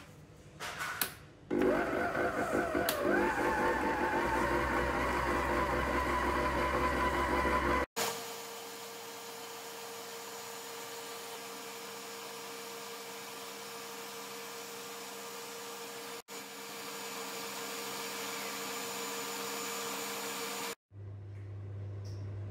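Stand mixer with a balloon whisk beating eggs and sugar at high speed to whip them up. A few clicks, then the motor starts about a second and a half in, its whine wavering and climbing as it speeds up; later it runs steadier and quieter, breaking off abruptly a few times.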